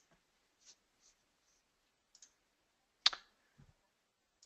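Quiet room tone broken by a few faint clicks and one sharper, louder click about three seconds in.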